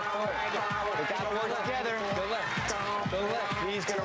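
Several voices shouting over one another, unclear enough that no words come through, with dull low thumps underneath.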